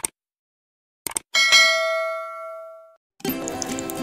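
Subscribe-button animation sound effects: a short click, then two quick clicks and a single bell ding that rings out for about a second and a half. Background music starts near the end.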